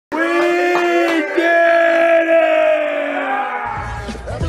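A long, drawn-out shouted call held on one slightly wavering pitch for about three and a half seconds, then a bass-heavy music beat comes in near the end.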